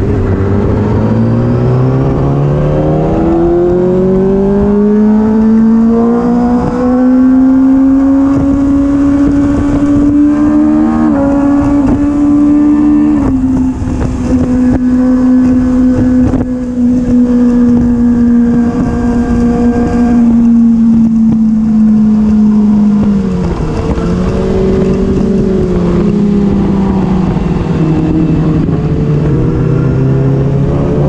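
Sport motorcycle engine under way, heard from the rider's seat. Its pitch climbs steadily for the first several seconds as the bike accelerates, then holds a high, steady note for most of the ride, and drops after about 23 seconds and again near the end as the bike slows. Wind rushes over the microphone.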